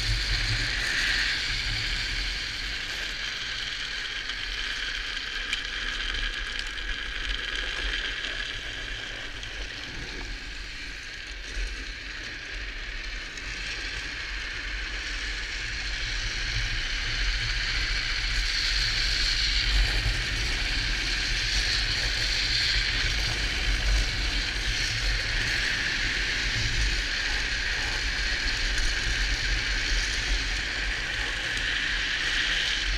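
Drift trike rolling downhill at speed: a steady hiss of its hard rear wheel sleeves on the asphalt, with wind rumbling on the helmet-mounted microphone. It grows a little louder in the second half.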